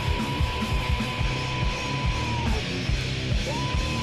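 Thrash-punk metal band playing at full volume over a fast beat, with a long held high note on top that breaks off about two and a half seconds in and comes back near the end.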